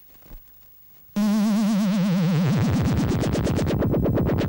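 Synthesizer comic sound effect: a loud warbling electronic tone cuts in suddenly about a second in, slides down in pitch, then breaks into fast pulses that speed up.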